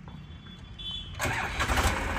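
Massey Ferguson 8055 tractor's diesel engine cranked and firing up about a second in, then running.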